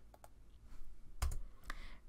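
A few short, sharp clicks from a computer mouse and keyboard as points are picked in a drawing program. The loudest click comes about a second and a quarter in, with a dull knock under it.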